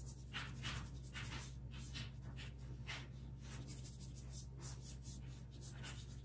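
Small brush scrubbing charcoal powder into drawing paper: quick, scratchy back-and-forth strokes, about two to three a second.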